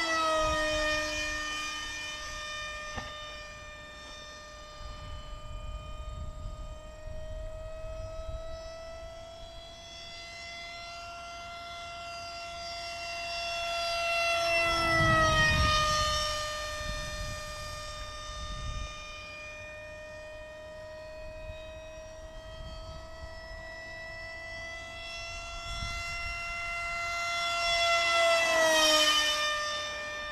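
Radio-controlled model jet flying, its power unit giving a steady high whine. It makes three passes: near the start, about halfway and near the end. At each one it grows louder and the pitch drops sharply as it goes by.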